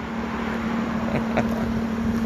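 A vehicle engine idling with a steady, even hum; it is the 'roaring noise' that was heard earlier.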